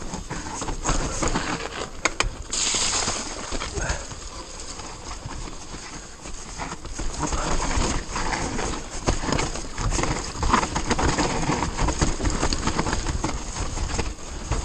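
2018 Orbea Rallon 29er enduro mountain bike riding fast down a rough, muddy trail: tyres on mud, roots and rock, with constant knocks and rattles from the bike over the bumps, and a brief hiss about two and a half seconds in.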